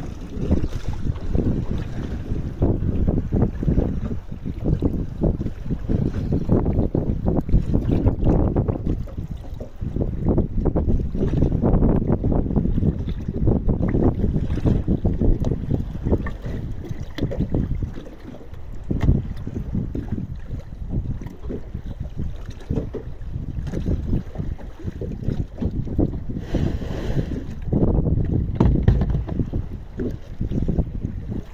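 Wind buffeting the microphone: a rumbling, gusty noise that swells and eases irregularly.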